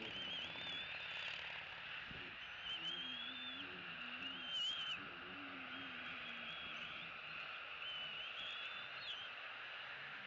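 Thin, wavering high-pitched whining calls of bald eaglets begging for food: five calls, each under a second long, heard over a steady outdoor hiss.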